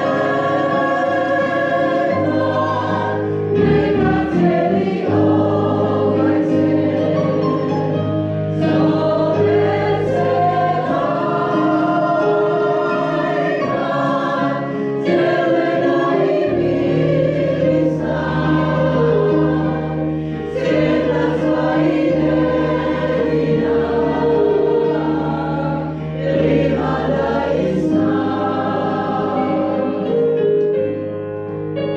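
A choir singing a song over held low accompanying notes.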